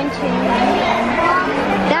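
Indistinct voices talking and chattering in a busy shop.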